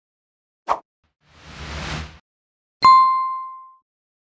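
End-screen sound effects: a short pop about a second in, a soft whoosh, then a bright bell-like ding near the end that rings and fades over about a second, as a subscribe button is clicked.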